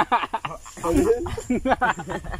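Young men laughing loudly in quick repeated bursts, mixed with some talk.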